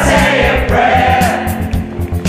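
A group of voices singing a Christmas pop song together over backing music with a steady drum beat.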